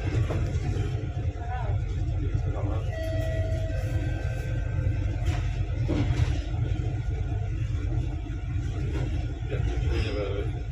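Steady low rumble of a bus driving, heard from inside, with indistinct voices talking underneath.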